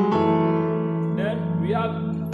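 Electronic keyboard in a piano voice playing a chord: it is struck right at the start and left ringing. It is part of a 5-1-4 chord progression in B major, here dressed with passing tones.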